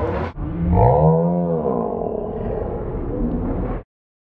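A loud, drawn-out roar that rises and then falls in pitch, trailing into a rough rumble that cuts off suddenly near the end.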